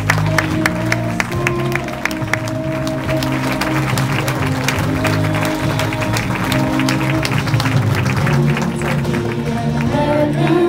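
A boy singing into a microphone over a backing music track played through a PA, with clapping throughout.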